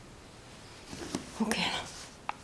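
A soft whispered voice, heard briefly in the second half.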